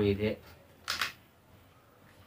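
A single short click about a second in, from a Zebronics Zeb-County 3 portable Bluetooth speaker being handled, after a brief spoken word.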